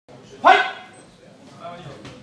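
A single short, loud shout about half a second in, a referee's call to start the fight, followed by quieter voices.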